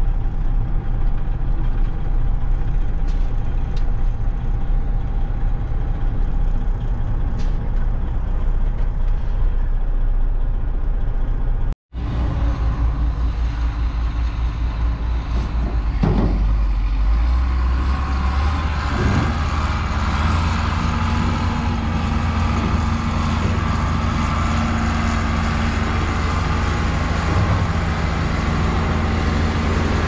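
A heavy truck's engine and road noise inside the cab while driving. After a cut about 12 seconds in, a John Deere 4650 tractor's six-cylinder diesel engine runs steadily as it pulls a planter up to and past the microphone.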